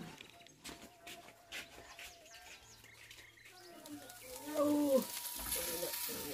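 Village yard sounds: a chicken clucking in short pitched calls about four to five seconds in, over faint bird chirps and scattered light knocks. Near the end a hiss comes up.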